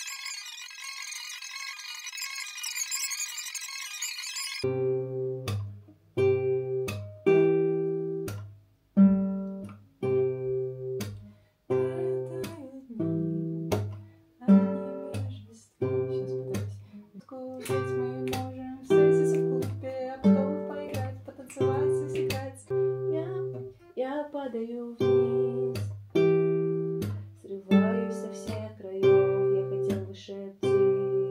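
Acoustic guitar played slowly, one strummed chord about every second, each left to ring and fade. The playing starts about four and a half seconds in, after a high shimmering sound.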